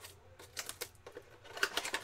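Plastic shrink wrap crinkling and crackling as it is pulled off a card box by hand, in irregular crackles that bunch into a quick dense run near the end.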